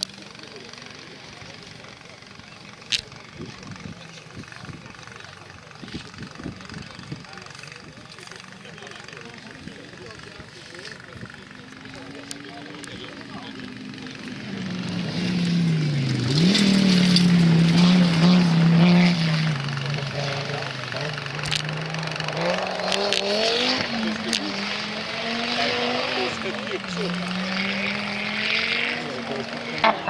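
Audi Sport Quattro S1 rally car's turbocharged five-cylinder engine, faint at first and growing loud about halfway through as it passes close, its pitch rising and falling with gear changes and lifts of the throttle.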